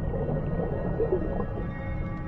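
Film underwater sound effects: a deep, muffled rumble with a wavering, churning swirl that peaks about a second in, under soundtrack music.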